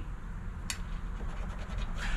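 A poker-chip scratcher scraping the coating off a scratch-off lottery ticket. There is a single sharp click about two-thirds of a second in.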